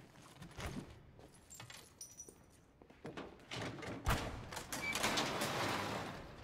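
A sharp metal clunk about four seconds in, then a truck's cargo door sliding open with a rush of rattling noise lasting about two seconds.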